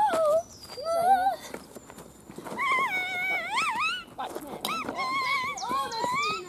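A girl's voice making long, wailing calls that slide up and down in pitch, several in a row with short breaks between them and a quieter stretch about two seconds in.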